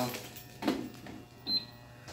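Two light clicks from handling a vending machine's coin mechanism, one about half a second in and one about a second and a half in, over a low steady hum.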